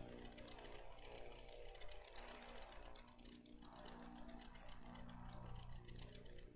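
Near silence: room tone with a faint low steady hum and a few light ticks.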